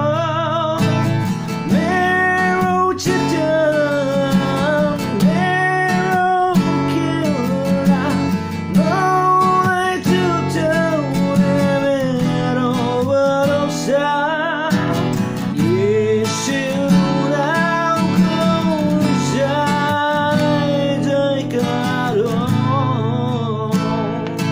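Cutaway steel-string acoustic guitar strummed steadily in chords, with a voice singing a hymn-like melody over it in phrases of held, wavering notes.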